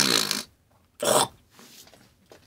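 A man hawking up phlegm: a rasping, buzzing clearing of the throat that stops about half a second in, then one short sharp burst about a second in.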